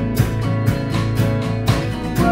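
Two acoustic guitars strumming a steady, even rhythm over a sustained low note, with no singing.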